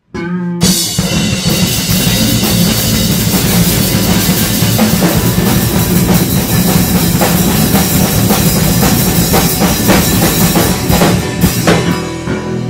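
Live band: two drum kits played hard and busily together over sustained low electric guitar notes. The band comes in suddenly about half a second in and plays on, with a brief drop just before the end.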